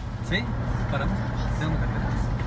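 Steady low drone of a car being driven, heard from inside the cabin, with a voice talking indistinctly over it from about a third of a second in.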